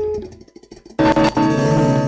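Live worship band music on keyboard: a held note fades out, then about a second in a loud, full chord is struck and held.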